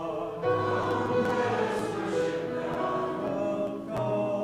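Church congregation singing a hymn together in held notes, with a new phrase starting about half a second in.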